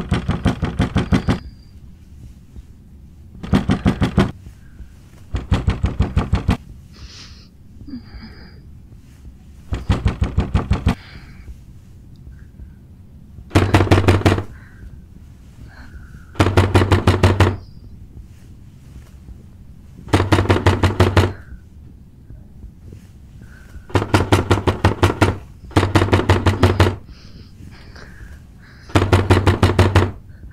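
Someone pounding on a door in about ten bursts of rapid banging, each about a second long, with pauses of one to three seconds between them.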